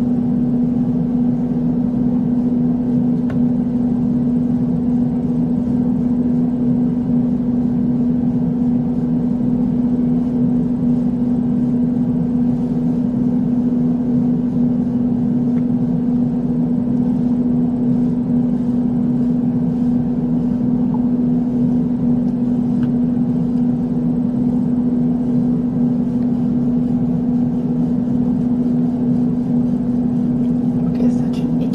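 A steady machine hum: one constant low tone with a fainter overtone over an even whir, unchanging throughout.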